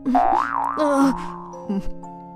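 Soft background music with held tones, and a comedic cartoon sound effect in the first second whose pitch wobbles up and down.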